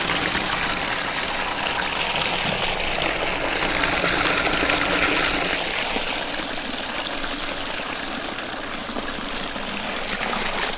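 Dirty carpet-cleaning wastewater gushing steadily out of a hose into a plastic tote and splashing onto a layer of foam. The flow eases slightly a little past halfway.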